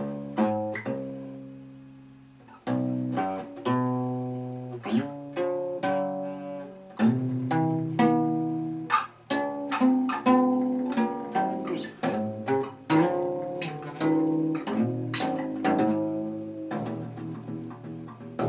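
Acoustic guitar played by hand: plucked notes and chords one after another, each ringing and fading, with one chord left to ring out for a couple of seconds near the start.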